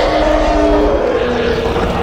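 Cinematic dinosaur roars over a deep, continuous rumble, with long held orchestral notes.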